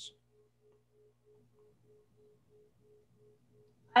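Near silence, with a faint short tone repeating about three times a second over a faint low hum.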